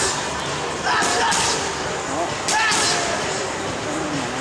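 Boxing gloves striking a trainer's pads during pad work: sharp smacks in quick pairs, one pair about a second in and another about two and a half seconds in.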